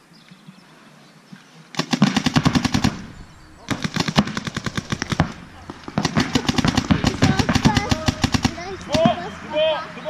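Paintball markers firing in three rapid strings of shots, about ten a second, with short gaps between the strings. Shouting voices follow near the end.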